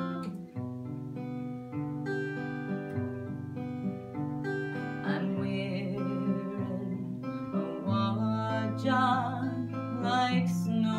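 Acoustic guitar playing the accompaniment to a slow Scottish folk song, joined about halfway through by a woman's singing voice.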